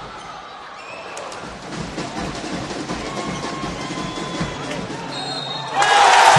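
Basketball game sound: a ball dribbled on a hardwood court, with arena crowd noise, and a louder burst of crowd noise near the end.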